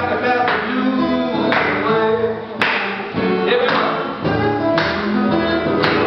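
Steel-string acoustic guitar strummed in a blues, chords struck about once a second, with a man singing over it.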